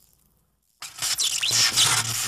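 Television static: a loud hiss with a low electrical hum, cutting in abruptly almost a second in after silence, with a short squealing whine in it.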